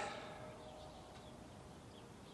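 Quiet outdoor background with faint, scattered bird chirps.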